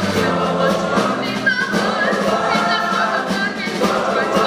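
Large boys' choir singing together in several voice parts, steady and full throughout.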